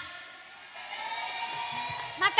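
Faint audience noise with a faint steady held tone coming in under it, in a pause between sentences of a girl's speech over a stage PA.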